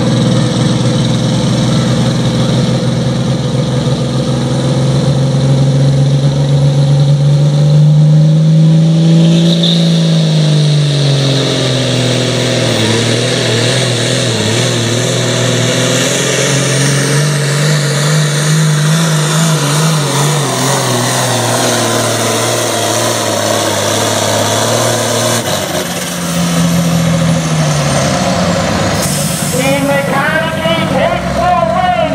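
Farmall diesel pro stock pulling tractor at full throttle pulling a weight-transfer sled, its engine note climbing and sagging twice as it runs. The engine drops off sharply about 25 seconds in as the pull ends, then briefly revs again.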